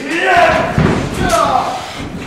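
Raised voices shouting around a wrestling ring, with a dull thud of a body hitting the ring near the middle.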